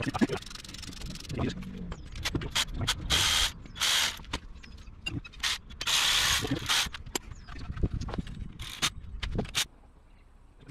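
Hand work on a rear brake caliper: metal tools clicking and scraping against the caliper, broken by several short hissing bursts.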